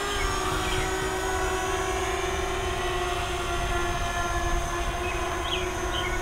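Eachine EX4 quadcopter's brushless motors and propellers humming steadily in flight, a droning tone that wavers slightly in pitch. A low rumble of wind on the microphone runs underneath.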